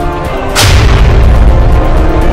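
Trailer music with a cinematic boom hit: a sudden loud impact about half a second in, followed by a deep rumble that lasts about a second, over the ongoing score.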